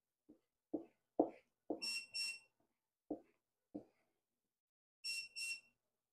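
Short soft knocks and taps of a spatula scraping cake batter out of a mixing bowl into a bundt pan, with the loudest knock about a second in. Twice, a pair of high electronic beeps sounds, about three seconds apart: an oven signalling that it has finished preheating.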